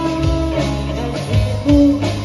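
A live band playing a song: drums keep the beat under electric and acoustic guitars and a violin, with a melody of long held notes.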